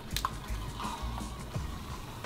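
Liquid nitrogen ladled from a metal dipper into a plastic cup, a soft liquid spill with a short clink near the start, under background music.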